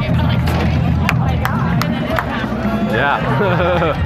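Crowd of people talking and calling out over background music, with a few sharp knocks in the first two seconds; voices rise near the end.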